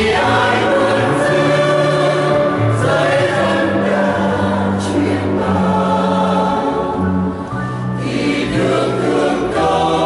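Mixed choir of women and men singing a Vietnamese Catholic hymn in sustained phrases, with a short break between phrases about seven and a half seconds in.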